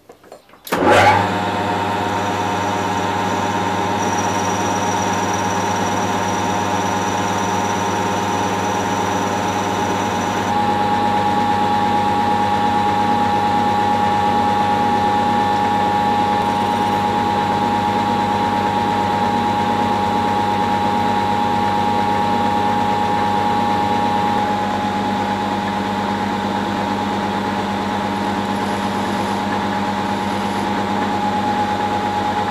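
Small hobby metal lathe starting up about a second in and then running steadily, its motor and spindle giving a continuous hum with a steady whine. The tone and level shift slightly twice, once near the middle and again later on.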